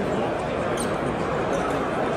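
Crowd hubbub in a large exhibition hall: many indistinct voices and footsteps making a steady din.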